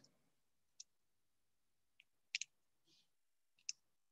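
Near silence over an open video-call line, broken by a few faint short clicks, about one a second, with a quick double click about two and a half seconds in.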